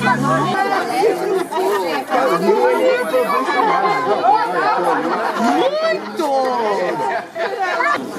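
Overlapping chatter of many people talking at once, a steady babble of voices with no single clear speaker.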